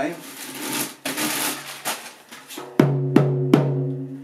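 Rustling and handling noise, then a small drum struck three times in quick succession near the end, each hit ringing with a steady low tone.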